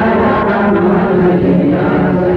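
Menzuma, Ethiopian Islamic devotional chanting, sung in long held notes that step from pitch to pitch.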